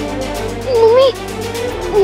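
Dramatic background music with sustained tones. About a second in, a short high, wavering vocal cry rises and falls over it.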